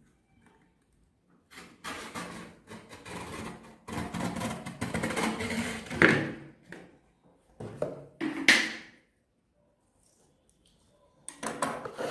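Utility knife blade cutting through the cardboard of a shoebox lid: a run of rasping, scraping strokes with a few sharper peaks, broken by short pauses.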